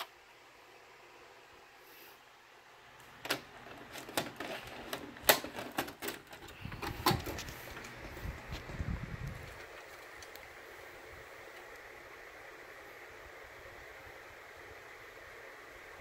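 VHS cassette being inserted into a VCR: a series of clicks and clunks as the cassette is pushed in and the loading mechanism takes it, then a low mechanical whir for a few seconds. After that, a faint steady hiss.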